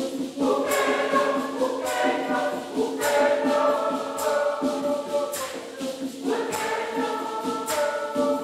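Church choir singing a hymn in parts to a steady beat.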